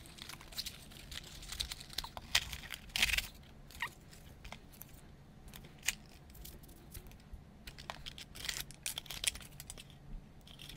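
Cardboard box being opened by hand: its flaps and paper insert rustling and crinkling, with scattered light clicks and taps. There is a brief louder rustle about three seconds in and a cluster of taps and rustles near the end.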